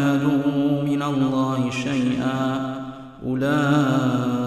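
A man chanting Quran recitation in the melodic tajweed style: one voice holding long, drawn-out notes with small melodic turns, with a short breath about three seconds in before the chant resumes.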